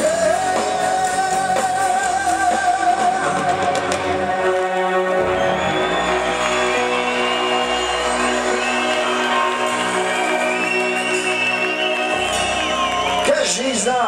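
Rock band playing live in a hall: held chords under a singer's voice, with a high melodic line over them in the second half. The bass drops out briefly about five seconds in and again near twelve seconds.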